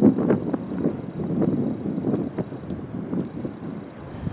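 Wind buffeting the microphone: an uneven low noise that rises and falls in gusts.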